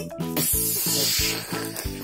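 Bouncy children's background music with a steady bass beat. Over most of it runs a long, loud hiss standing for a toy dinosaur breathing fire.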